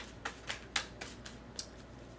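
A deck of tarot cards being hand-shuffled, the cards clicking against each other as they are dropped from hand to hand: a run of quiet clicks, about four a second.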